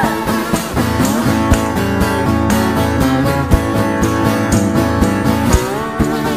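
Live acoustic guitar strumming a steady rhythm in an instrumental passage of a roots-rock song, with a hand shaker keeping time. Over it runs a lead melody of bending, wavering notes.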